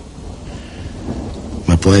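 A low, steady rumbling background with a faint hiss, heard in a gap between spoken lines; a voice comes back in near the end.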